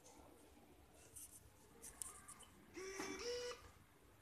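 Near silence with a few faint clicks, then a short faint pitched tone about three seconds in that steps up in pitch once before stopping.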